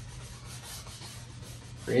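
Paintbrush dragged across an oil-painted canvas, a faint, steady scratchy rub, over a low steady hum.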